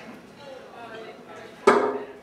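A man's voice mumbling indistinctly close into a handheld microphone, imitating a pilot's garbled cabin announcement over the intercom, with a sudden loud pop into the mic near the end.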